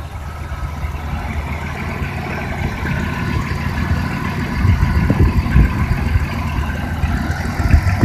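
Chrysler engine idling steadily under the open hood, with irregular low bumps during the second half.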